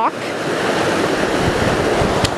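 Steady rushing of a fast-flowing creek, with a brief low rumble of wind or handling on the microphone about halfway through.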